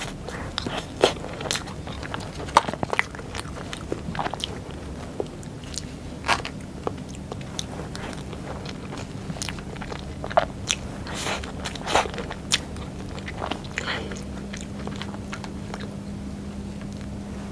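Close-miked eating of soft Black Forest cake with cream: wet chewing and mouth smacks, with irregular sharp clicks from the metal spoon in the mouth and against the cake board.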